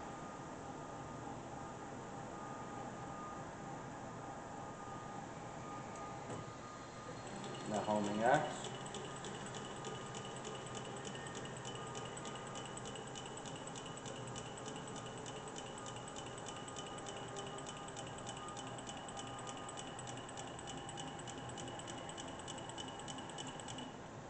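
Bridgeport EZ-Trak CNC mill homing under power, its table driven along the X axis by the axis motor. A steady hum is joined about a third of the way in by a high whine and an even, regular ticking that carry on to the end.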